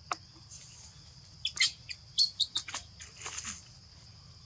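Steady high-pitched insect drone from the surrounding forest, with a quick run of short, sharp chirps and clicks between about one and a half and three and a half seconds in.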